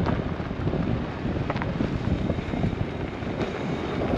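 Wind buffeting the camera microphone of a rider moving on an electric unicycle, over a steady low rumble from the tyre rolling on a loose dirt road.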